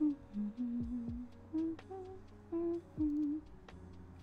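A person humming a tune in short held notes that step up and down, over quieter background music with a beat and a ticking rhythm.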